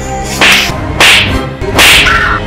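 Three loud slaps in quick succession, about two-thirds of a second apart, over a bed of music.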